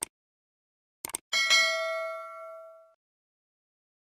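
Subscribe-button animation sound effect: mouse clicks, then a bright bell ding that rings out and fades over about a second and a half.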